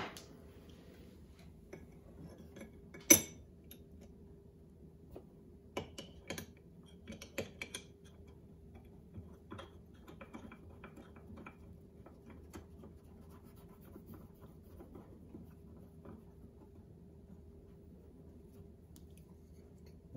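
Scattered light clicks and metallic clinks of small steel and bronze hand-plane parts being handled and set down on a wooden workbench, with one sharper knock about three seconds in and a cluster of clicks a few seconds later.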